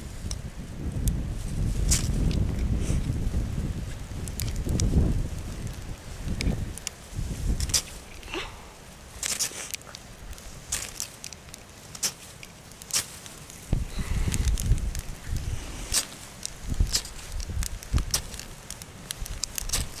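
A firesteel (ferrocerium rod) scraped again and again with a striker, short sharp scrapes about one a second at uneven intervals, throwing sparks into a tinder nest of dry grass and reedmace seed fluff to light a fire.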